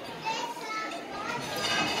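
Background chatter of diners in a dining room: several faint voices, some high-pitched, overlapping without close speech.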